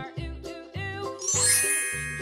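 Bright, shimmering chime sound effect coming in about two-thirds of the way through and ringing on, over cheerful children's background music with a steady beat.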